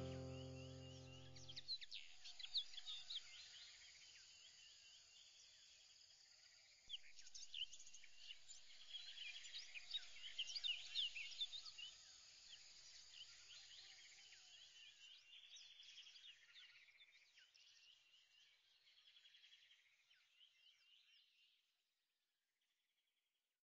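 The last held notes of a music track fade out in the first two seconds, leaving faint birdsong: many quick chirps and whistles, busiest a third of the way through, that thin out and fade to nothing just before the end.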